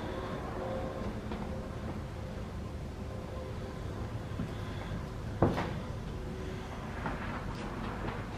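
Footsteps on old bare wooden floorboards, with faint creaks and one sharp knock a little over five seconds in.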